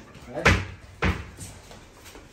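Two sharp household knocks: a loud one about half a second in and a lighter one about a second in, with a short spoken word just before the first.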